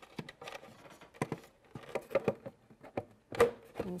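Irregular light clicks and taps of hands handling the plastic removable display of an Ultra Ship Ultra-55 digital scale as its cord is tucked in and the display is lined up with the base.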